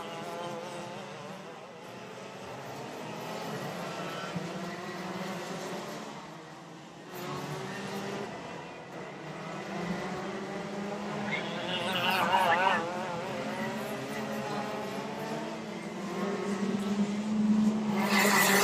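Two-stroke racing kart engines running, their high buzzing notes rising and falling in pitch as they work through the corners. A louder warbling stretch comes about twelve seconds in, and the engines grow louder near the end.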